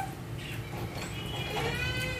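A high-pitched, drawn-out cry in the background, starting about a second in and lasting about a second.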